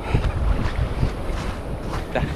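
Wind buffeting a handheld camera's microphone: an uneven, rumbling noise with no clear tones.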